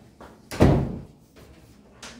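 A single loud, heavy thump about half a second in, dying away quickly.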